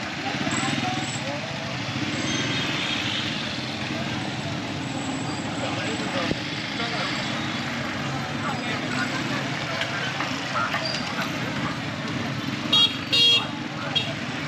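Motor scooters running past in busy street traffic with a steady engine drone. Near the end a horn beeps twice in short, loud blasts.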